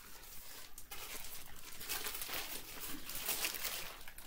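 Black paper bag rustling and crackling, picking up about a second in, as a book is pulled out of it.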